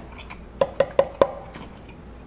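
Four quick, sharp clicks, about a fifth of a second apart, each with a slight ring.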